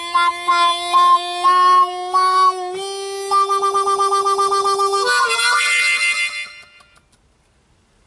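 Key-of-C diatonic blues harmonica played with cupped hands: a short chordal phrase of changing notes over a steady low note, then a fast pulsing wah on a held chord. A brighter closing chord comes about five seconds in and fades out near seven seconds.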